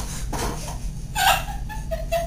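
High-pitched giggling: a short run of broken laughing notes that starts a little after a second in.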